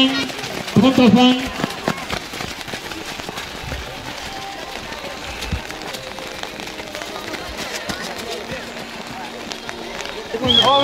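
A shouted voice about a second in, then the steady outdoor hubbub of a children's race: the patter of small running footsteps on wet ground and tarmac, with faint voices in the background.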